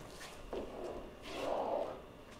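Two strokes of a pen scraping across a drawing screen, the second longer and louder.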